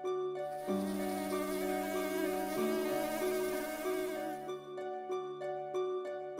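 A cartoon bee's buzzing sound effect, lasting about four seconds, over gentle plucked-string background music that comes back to the fore near the end.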